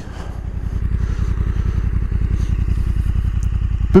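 Honda NT1100's parallel-twin engine, the Africa Twin unit, idling steadily at standstill with an even pulsing exhaust beat.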